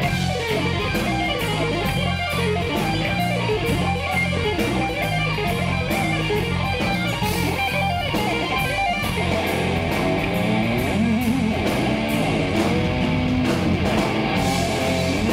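Rock band playing live: distorted electric guitar over bass guitar and drums, with a steady beat.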